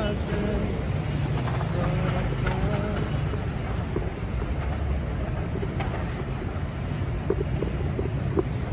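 Busy road traffic: a steady low rumble of car and motorbike engines and tyres, with voices of passers-by heard faintly now and then.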